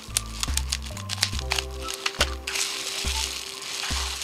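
Plastic bubble wrap being handled and unwrapped from a watch, crinkling with sharp crackles through the first half and then a denser rustle. Background music with a low bass line plays throughout.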